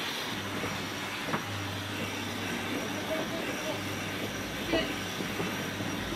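Inside the cabin of an IMOCA 60 racing yacht under way: the hull rushes steadily through the water over a low, steady hum. Two single knocks come through the hull, one just over a second in and another near the end.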